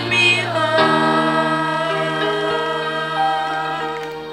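Children's choir singing, moving into a long held chord about a second in.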